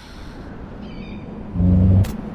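Cinematic intro soundtrack of a music video: a low rumble swelling steadily, a brief high-pitched cry about a second in, and a loud deep bass tone in the last half second.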